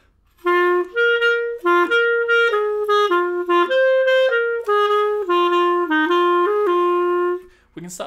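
Solo clarinet playing a jazz-waltz phrase in swung quavers, long-short, with short gaps where detached notes are released early. It starts about half a second in and ends just before the eighth second.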